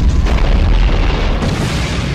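Sci-fi television space-battle sound effects: a loud, continuous deep boom of explosions with no break.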